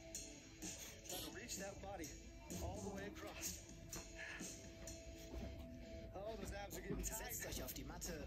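Background music with indistinct voices.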